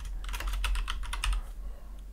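Typing on a computer keyboard: a quick run of key clicks that thins out near the end.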